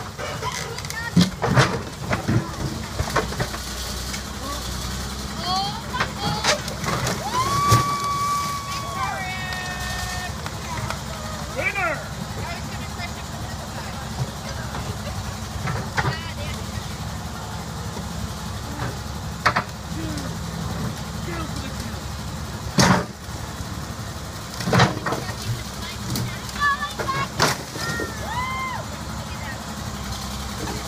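Backhoe engine running steadily while its bucket repeatedly smashes into a wrecked car body, giving about a dozen loud, separate metal crashes and crunches spread through.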